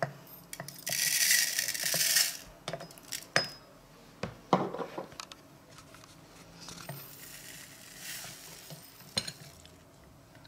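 Flax seeds poured from a small glass bowl into a plastic mini-chopper bowl, a hiss of falling seeds for about a second, followed by light clicks and taps of a metal spoon and glass against the bowl. A softer pour of chia seeds comes near the end.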